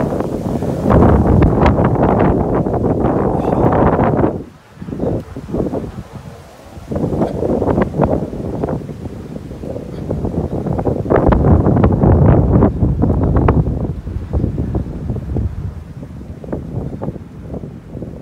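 Wind buffeting the microphone in loud gusts, easing off for a couple of seconds about a third of the way through. Footsteps sound over it on dry leaf litter and twigs.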